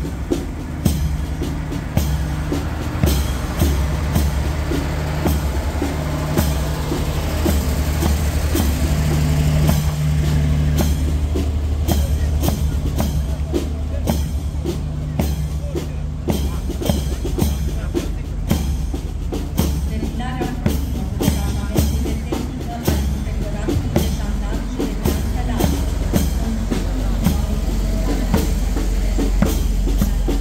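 Heavy military trucks' diesel engines running as they drive slowly past in a column, a steady low hum, with drum-beat music playing over them.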